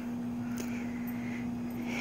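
A steady low hum at one unchanging pitch, over faint background noise.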